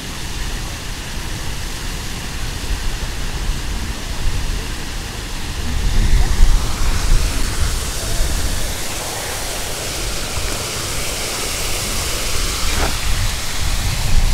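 Steady rushing of an artificial rock-garden waterfall, growing louder about six seconds in, over a low rumble.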